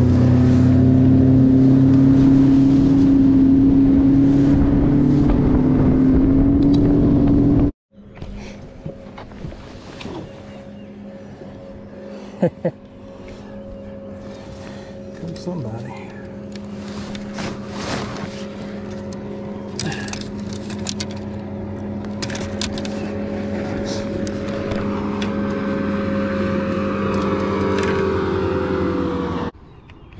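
Bass boat's outboard motor running at high speed, loud, with wind and water noise, its pitch creeping slightly upward; it cuts off abruptly about eight seconds in. After that comes a quieter steady motor hum that slowly grows louder, with small clicks and knocks of fishing rods being handled.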